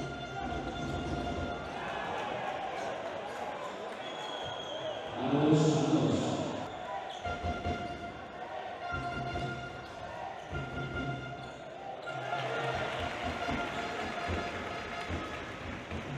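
Basketball being dribbled on a hardwood court during live play, a run of low thuds, with players' and spectators' voices echoing in the arena. A loud shout stands out about five seconds in, and the crowd noise rises over the last few seconds.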